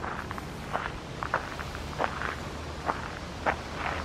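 Footsteps of a person walking outdoors, short crunchy steps at about two a second, slightly uneven, over a low steady rumble.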